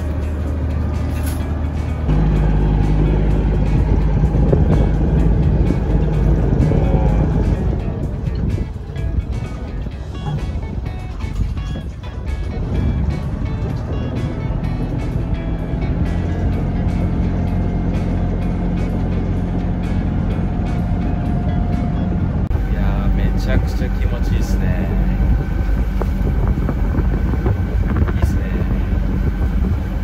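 Engine of a small harbour ferry boat running steadily under way, louder from about two seconds in.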